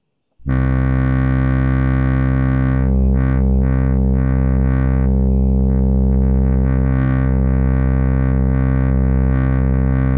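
Axoloti synthesizer played from a ROLI Seaboard Block: a dense sustained chord with deep bass that starts abruptly about half a second in and is held throughout, its upper tones swelling and fading as the notes are shaped.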